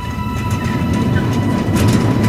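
A heavy metal sliding gate pushed shut along its track: a low rolling rumble that grows louder, with metallic clattering near the end.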